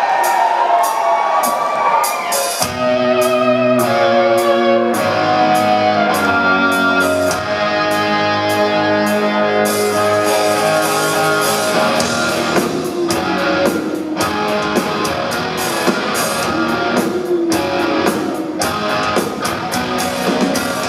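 Live rock band playing a song's instrumental intro on electric guitars, bass and drums. Thin guitar tones open it, the low end comes in about three seconds in, and the drums get heavier about twelve seconds in.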